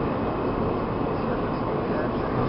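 Steady running noise of a New York City subway car, heard from inside the car.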